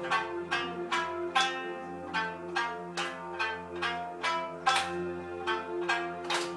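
Live instrumental passage: a plucked-string melody in quick notes, about two to three a second, over steady held keyboard chords, with no singing.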